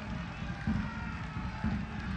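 Faint football-stadium ambience: a low rumble with a few distant crowd voices from sparsely filled stands.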